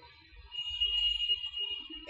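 A steady high-pitched tone starts about half a second in and holds, over a faint low rumble.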